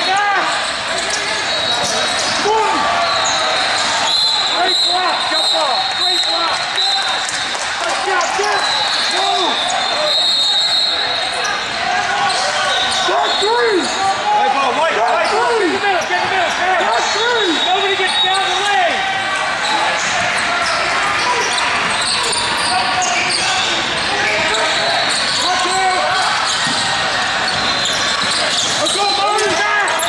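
Basketball game in progress on an indoor court: the ball bouncing and sneakers squeaking over a steady hubbub of players' and spectators' voices, in a large hall.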